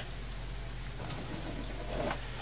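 Steady background hiss with a faint low hum and no distinct event: room tone.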